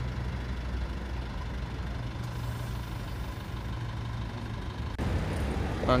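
A vehicle engine idling: a steady low hum. About five seconds in it cuts to louder street noise.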